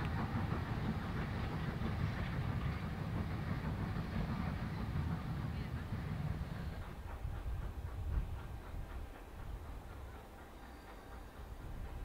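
Steam-hauled train of passenger coaches running past at a distance, a low rumble of wheels on rail that fades away after about seven seconds as the train moves off.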